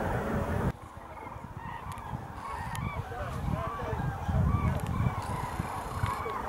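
A flock of common cranes calling in flight, many trumpeting calls overlapping, over a low rumble. The overall level drops suddenly under a second in, then the calling builds up again.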